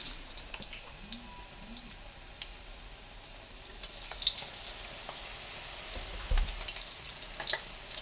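Batter-coated acacia flowers deep-frying in hot oil: a steady sizzle with scattered crackles and a few sharper pops.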